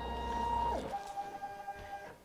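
CNC machine's axis motors whining as the gantry moves the laser attachment back to its origin. The whine rises in pitch as the move starts, holds steady, then drops and stops a little under a second in. A fainter steady tone carries on after it stops.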